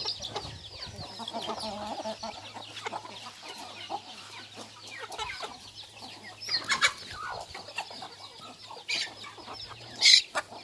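A flock of Thai native chickens calling: chicks peeping continually with short, high, falling peeps, while hens cluck lower. A few louder calls stand out about two-thirds of the way through and near the end.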